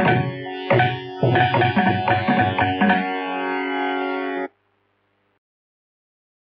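Closing bars of a Carnatic piece in raga Bhairavi: quick drum strokes over sustained pitched tones stop about three seconds in, leaving a held final note. The recording then cuts off abruptly into silence about four and a half seconds in.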